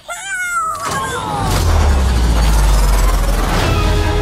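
A cartoon creature's high squealing cry that falls in pitch through the first second. A loud, deep rumble then builds up and holds until the end.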